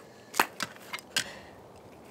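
Three short sharp clicks, about half a second apart, of a plastic Easter egg knocking against a dog's teeth as he noses and mouths it.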